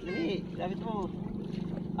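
A boat engine running steadily at low revs, a constant low hum.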